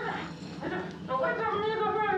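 A man's high-pitched, whimpering cries without words from a film soundtrack: a short cry at the start, then a longer wavering one from about halfway in.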